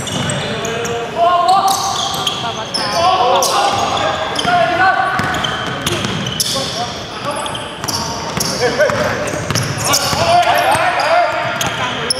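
Live basketball play in a large echoing gym: the ball bouncing on the wooden court, rubber sneakers squeaking in short chirps, and players calling out to each other throughout.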